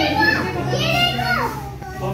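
Young children's voices calling out in high pitch while playing: a short call at the start, then a longer one about a second in that falls in pitch at its end.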